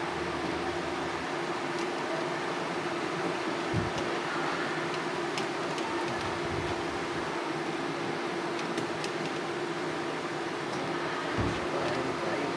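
Steady fan-like machine hum with a constant tone, broken by a few faint clicks and two short low knocks as a plastic sink drain pipe is handled and fitted under the sink.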